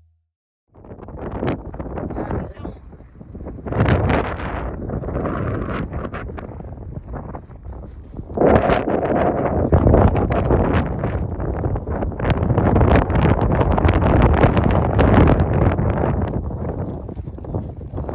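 Strong gusty wind buffeting the microphone: a rushing noise that swells and drops, getting louder about eight seconds in.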